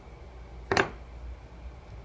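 A single short, sharp clink of a hard object being knocked or set down, about three quarters of a second in, over a low steady hum.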